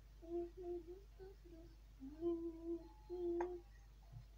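A voice humming a wordless tune, a few short notes followed by two longer held ones.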